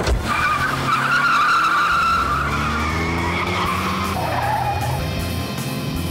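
Car engine revving up as the car pulls away fast, with tyres squealing over the first two seconds or so.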